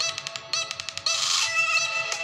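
Music playing loudly through the itel A25 smartphone's single built-in loudspeaker during a speaker test. It opens with a quick run of sharp clicks, then moves into held melodic notes.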